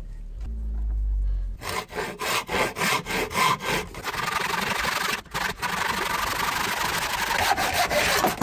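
Hand saw cutting through a wooden beam in quick back-and-forth strokes, starting about a second and a half in after a low rumble. The strokes run together into a steady rasp in the second half, with a brief pause in the middle.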